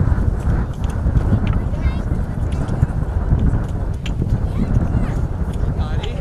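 Wind buffeting the microphone with a steady low rumble, under scattered sharp knocks of spades striking dry, stony soil and indistinct voices.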